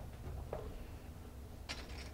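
Quiet room tone with a steady low hum, broken by a faint click about half a second in and a slightly sharper small click near the end.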